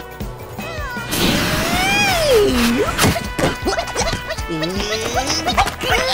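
Cartoon soundtrack: music under a run of slapstick sound effects, quick thumps and crashes. Wordless cartoon cries glide up and down in pitch between them, one long rising-then-falling cry about two seconds in.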